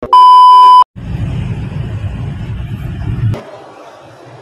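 Video transition effect: a loud, steady 1 kHz test-tone beep lasting under a second, followed by about two and a half seconds of static-like noise that cuts off suddenly, leaving faint background ambience.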